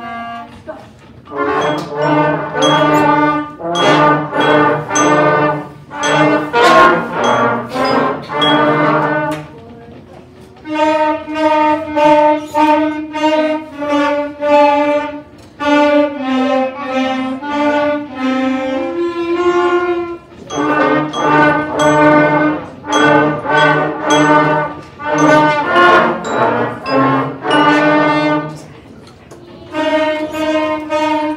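Beginner school wind band of flutes, clarinets, saxophones, trumpets and trombones playing a tune together in short phrases, with brief breaks between them.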